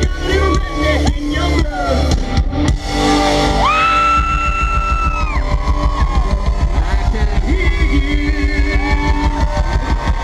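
Live country-rock band playing loudly through a festival sound system, heard from within the crowd: a steady heavy beat with electric guitar and a singer's voice, including a long held note about four seconds in.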